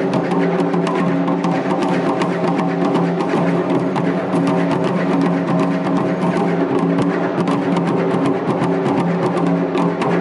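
A group of taiko drums struck with wooden sticks in a fast, dense, unbroken rhythm, many strikes a second over the low ringing of the drumheads.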